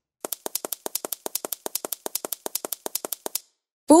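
Cartoon sound effect of rapid, even mechanical clicking, about ten clicks a second for about three seconds, that stops abruptly shortly before the end.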